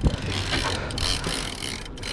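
Fishing reel's gears whirring steadily as line is wound in, after a sharp click at the start.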